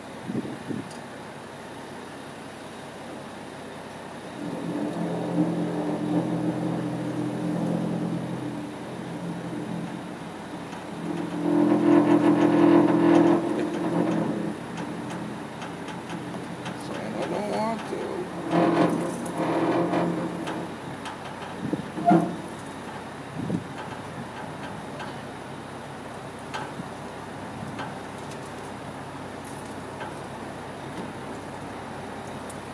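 Truck liftgate's electric hydraulic pump motor running in two stretches of several seconds each, a steady hum, the second one louder, as the platform is moved; a single knock follows later.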